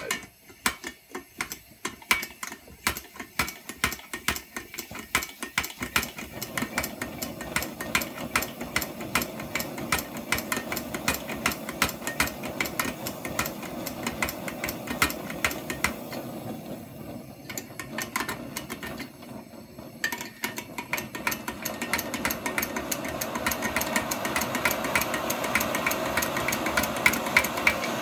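Primus No.96 paraffin stove being hand-pumped, the pump clicking with each quick stroke throughout. Under it a rushing burner roar builds as the pressurised paraffin vaporises and lights, growing louder about two-thirds of the way through.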